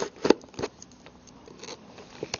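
A knife cutting open a retail case package, with crackling scrapes and a few sharp clicks in the first second, then quieter scratching.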